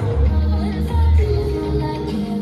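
Pop song with singing and a heavy, pulsing bass beat, played loud over stage loudspeakers.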